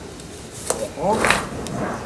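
Mostly a man's voice speaking briefly in French, preceded by a single short click. The click is too faint and brief to name its source.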